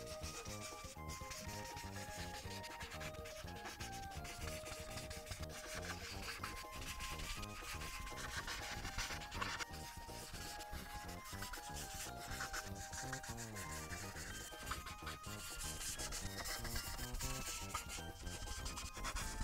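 Ohuhu paint marker tip rubbing and scratching over paper in continuous strokes as a large area is filled in with colour.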